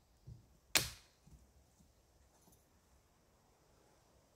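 Chopping blows on a thin standing dead tree trunk: a dull knock, then one sharp, loud crack under a second in.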